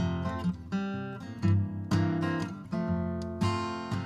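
Acoustic guitar strummed in a steady pattern of chords, each stroke ringing on into the next, with no voice.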